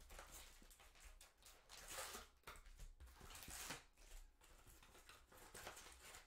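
Faint crinkling and rustling of cardboard and foil packaging as a trading-card hobby box is opened and its packs handled, in a few short swells.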